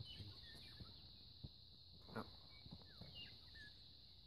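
Faint outdoor quiet: a steady high insect drone in dry grass, with a few short bird chirps. Soft footsteps on dry, rocky ground, with one louder scuff about halfway as a boot comes down on rock.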